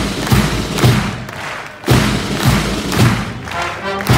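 Pipe band drums beating a marching rhythm, heavy low strikes about two a second, while the bagpipes are silent between tunes.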